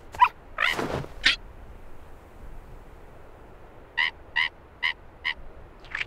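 Cartoon seabird voice effects: a few short calls, one of them rising, in the first second or so, then four quick, evenly spaced squawks about four seconds in.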